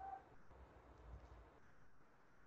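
Near silence: faint room tone, with a brief faint tone at the very start.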